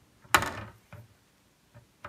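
A foam bath sponge scrubbing against a hard plastic toy figure. One loud rubbing stroke comes about a third of a second in and fades over about half a second, with a fainter short stroke near the one-second mark.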